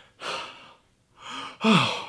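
A man's heavy breaths out, twice, then a voiced sigh falling in pitch near the end: an exasperated sigh.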